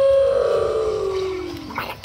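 A person's long wordless vocal sound, held on one note and then sliding steadily down in pitch, fading out near the end.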